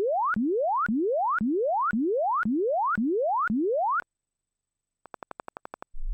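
Test signal from SoundID Reference (Sonarworks) room-calibration software during its microphone input gain check. Short rising sine sweeps repeat about twice a second, each gliding up from low to mid pitch and dropping back, until about four seconds in. After a pause, a quick train of about a dozen short pulses follows near the end.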